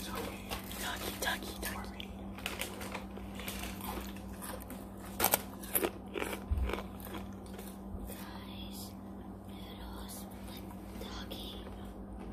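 Close-up eating and chewing sounds as pasta is picked up by hand and eaten: a busy run of wet clicks and crackles, loudest in a few sharp bursts about five to six seconds in, over a steady low hum.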